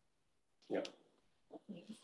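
A quiet room with a single brief spoken "yeah" a little under a second in, and a soft short vocal sound, like the start of a laugh, near the end.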